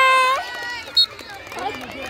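A long, loud, high-pitched yell that ends with a falling pitch just under half a second in, a short sharp chirp about a second in, then overlapping calls and shouts of players and spectators at a kho kho game.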